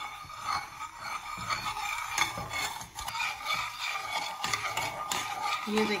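A metal spoon stirring a thick coffee-and-water mixture in a metal saucepan, with irregular clinks and scrapes against the sides of the pan.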